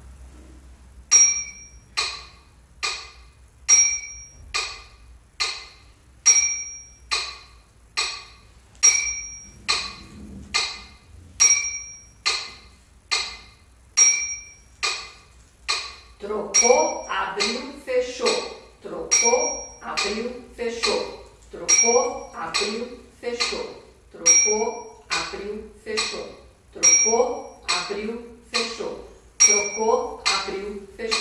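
Electronic metronome clicking steadily at about 70 beats a minute in a three-beat pattern, the first beat of each group a higher, ringing accent.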